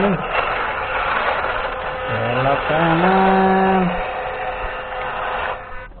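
Small brushed electric motor and gear drivetrain of a WPL D12 remote-control pickup whirring steadily as it drives, cutting off suddenly near the end. A man's drawn-out vocal sound runs over it from about two to four seconds in.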